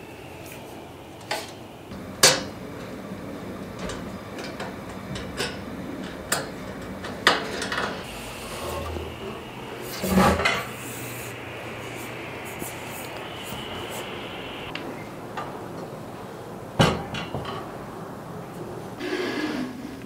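Scattered knocks and clinks from a white metal flat-pack shelf frame being screwed together and handled, with about eight separate sharp knocks, the loudest about two seconds in. A short rustle comes near the end.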